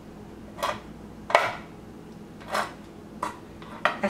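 Chef's knife slicing almonds on a wooden cutting board: about five separate knocks of the blade through the nut onto the board, spaced unevenly, the loudest about a second and a half in.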